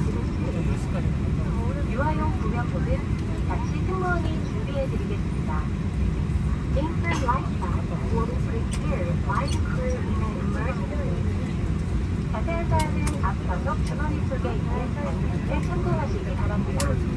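Steady low cabin rumble inside a parked Boeing 737 airliner, with faint passenger chatter and a few light clicks in the background.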